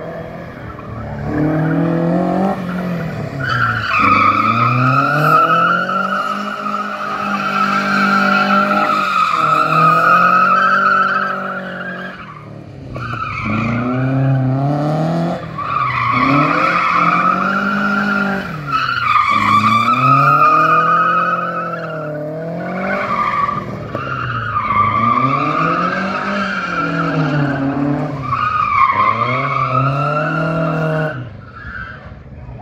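A pickup truck spinning in circles on a tarmac skid pan: the engine revs rise and fall over and over, roughly every three seconds, with long tyre squeals while it slides.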